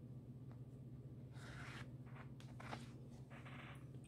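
Faint rustling and scraping of cotton fabric and sewing thread being handled and pulled through while a stitch is unpicked, a few soft strokes in the middle and second half, over a steady low hum.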